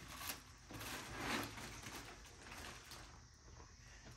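Faint, irregular crinkling and rustling of aluminium foil as a foil-wrapped whole roast piglet is handled and lifted out of a barrel smoker.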